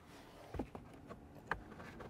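Faint handling of the plastic cabin air filter housing: two light knocks, about half a second and a second and a half in, as a tab is pulled down.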